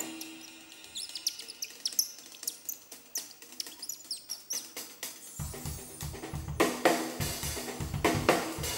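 A small hand-held whistle played to give quick, high bird-like chirps over sparse percussion clicks. Bass and drum kit come in about five and a half seconds in, with louder kit hits near the end.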